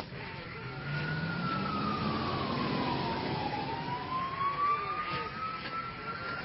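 Emergency vehicle siren on a slow wail: its pitch falls over a couple of seconds, then climbs again.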